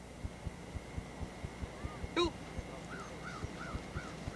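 Birds calling outdoors: one short, harsh call about two seconds in, then a quick run of about five short rising-and-falling chirps near the end, over a faint, regular low ticking.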